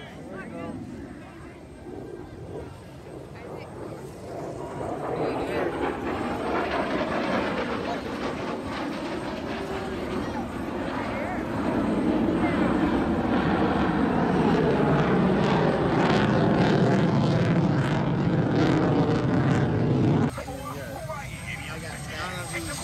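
An aircraft flying past: its engine noise builds over several seconds, is loud and steady from about halfway through, then cuts off suddenly near the end.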